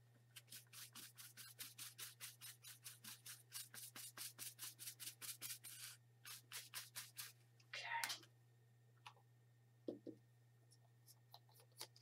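Paintbrush brushing wet fluid acrylic paint back and forth on the painting surface, blending the colour in soft, quick strokes, about four a second, that stop about seven seconds in.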